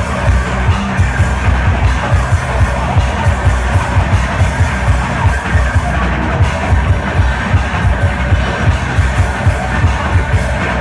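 Noise-rock band playing live: loud electric guitars over a drum kit beating a steady, fast rhythm of about three strikes a second.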